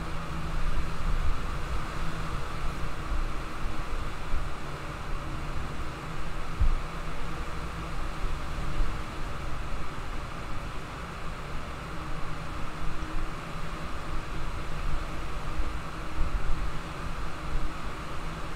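Steady background hiss and low hum of a room picked up by an open microphone, with one brief low bump about two-thirds of the way through.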